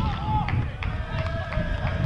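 Shouting voices at a football match: players and spectators calling out, one call held steadily for the second half, with a few sharp knocks and a low rumble of wind on the microphone underneath.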